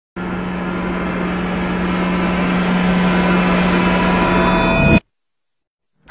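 A swelling gong-like sound effect with a steady low hum. It grows louder and brighter for about five seconds, then cuts off suddenly.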